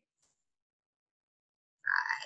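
Near silence from noise-suppressed video-call audio, with a faint tick shortly in. A woman's voice begins counting down just before the end.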